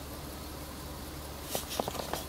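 A steady low hum, with a few short clicks of the PVS-14 night-vision monocular being handled and fitted to the camera about one and a half seconds in.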